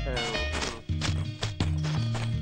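Background film music: a low, steady bass line under regular clopping percussive knocks, with a short voice sliding down in pitch near the start.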